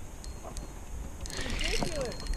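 Low wind rumble on the microphone, then a quick run of small clicks and knocks in the second half, with a faint voice under it near the end.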